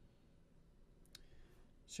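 Near silence: faint room tone, with one short click about a second in.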